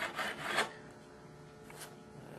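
Fret file rasping along a guitar's metal fret wire, rounding a levelled fret's flat top back into a crown: a few short strokes that stop a little over half a second in.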